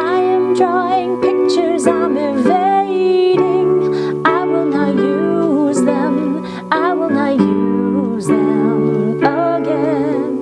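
Electronic keyboard playing held chords that change every second or two, with a voice singing or humming along above them, its notes wavering with vibrato.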